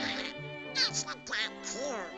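Donald Duck's squawky, quacking cartoon voice in two short bursts about a second in, over light orchestral music.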